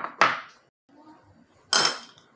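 Large metal spoon clinking against a metal cooking pot: two sharp knocks about a quarter second apart at the start, and a louder one near the end as the spoon is lifted out.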